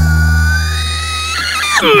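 A pop song playing, with the drums dropping out to leave a held bass note and a sustained chord. Near the end a singer's voice slides in, leading into the next sung line.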